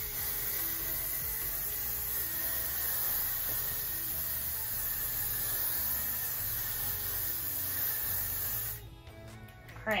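Aerosol hairspray can spraying in one long, steady hiss that cuts off suddenly about nine seconds in.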